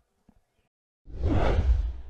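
Whoosh transition sound effect with a deep rumble underneath, swelling up about a second in and fading away over about a second and a half.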